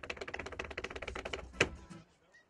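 Tap shoes striking a portable tap board in a rapid, unbroken run of taps, closed by a single loud stamp about a second and a half in.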